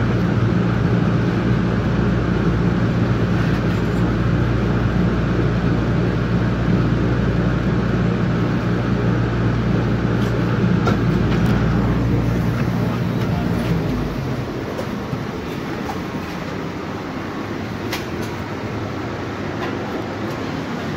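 MBTA Green Line light-rail car running into its last stop: a steady low hum that dies away about fourteen seconds in as the train comes to a stop. After that the car is quieter, with a few sharp clicks.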